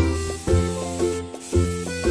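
Aerosol spray-paint can hissing for about a second, under upbeat background music.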